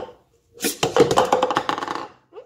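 Plastic cups knocking against each other and a granite countertop as they are handled: one sharp knock at the start, then a rapid rattling clatter from about half a second in.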